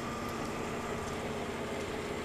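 Steady background noise with a faint, even hum under it; no distinct event stands out.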